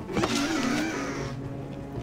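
Sound effect of a Protoceratops throwing itself down and sliding into the dust: a scraping rush with a wavering tone, lasting about a second and a half, over a low steady music drone.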